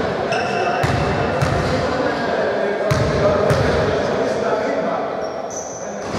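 A basketball bouncing on a hardwood gym floor, several thumps about half a second to a second apart, over a steady murmur of voices echoing in a large sports hall.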